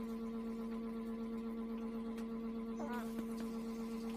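A steady low buzzing hum that holds unchanged throughout, with a brief short squeak about three seconds in.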